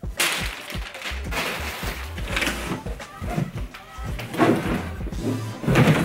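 A large cardboard shipping box being pulled open, its flaps scraping and rustling in a few separate bursts, the loudest near the end, over background music with a steady bass.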